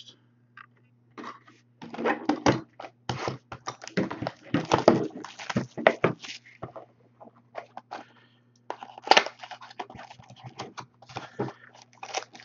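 A trading-card pack's wrapper being torn open and crinkled by hand, in irregular bursts of crackling. A faint steady low hum runs underneath.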